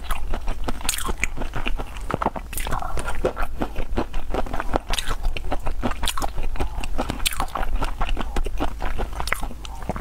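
Mouth sounds of eating raw black tiger shrimp in a chili marinade: wet chewing and smacking with many irregular sharp clicks.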